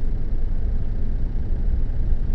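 Steady low rumble of a car heard from inside the cabin: engine and road noise while driving.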